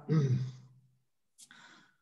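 A man's voice trailing off in a drawn-out, falling hesitation sound, then a pause with a brief faint noise near the end.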